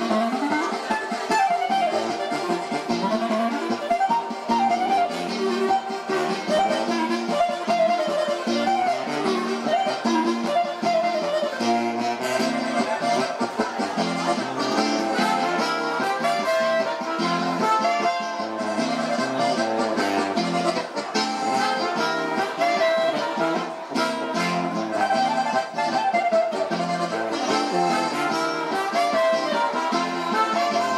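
Live Oberkrainer band playing a fast polka, the clarinet taking a running lead over accordion accompaniment.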